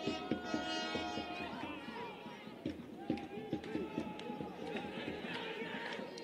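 Players' voices calling out across a football pitch, with scattered spectator voices behind them. One louder, drawn-out shout comes about a second in.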